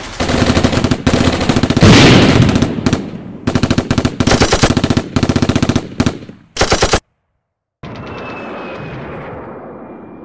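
Automatic rifle and machine-gun fire in rapid repeated bursts, which cuts off suddenly about seven seconds in. After a brief silence comes a quieter hiss with a thin, steady high tone.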